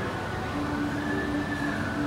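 Steady rumbling hum of a large indoor shopping-mall space, with a held low tone running through most of it.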